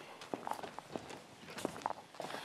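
Footsteps of two people walking on a hard patio floor, one in high heels: a run of irregular short clicks and taps.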